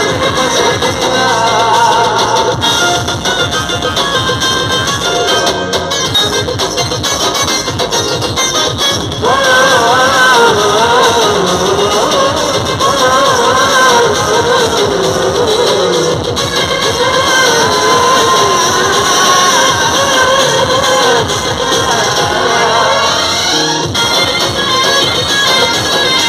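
Live stage band music played loud through a concert PA, heard from among the audience. A lead vocal melody comes in about nine seconds in and carries on over the band.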